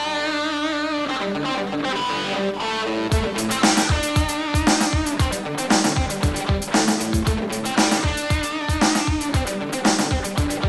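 Rock song intro on electric guitar: chords ring out at first, and about three seconds in a heavy drum beat kicks in and keeps a steady rhythm under the guitar.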